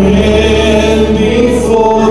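A slow hymn sung in long held notes, accompanied on an electric keyboard.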